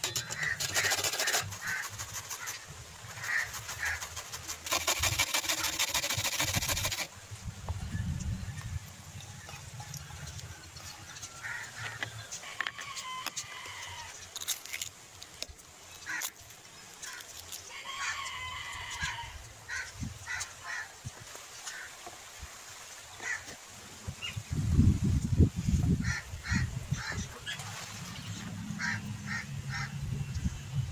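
Peafowl giving short honking calls, repeated in scattered groups. Two bursts of fast rattling come in the first seven seconds, and a loud low rumble about twenty-five seconds in.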